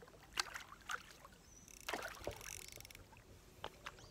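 A hooked mirror carp splashing and thrashing at the water surface: a series of sharp splashes.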